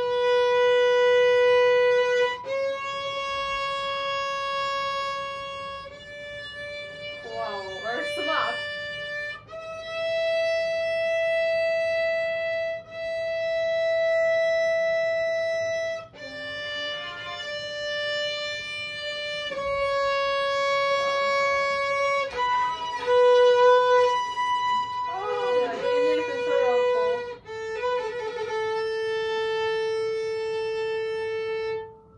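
Violin bowed by a beginner in long, slow single notes, each held for a few seconds with short breaks at the bow changes. The notes step up in pitch over the first half and come back down over the second.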